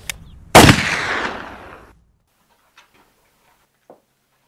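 A single gunshot, sudden and loud, its echo fading away over about a second and a half.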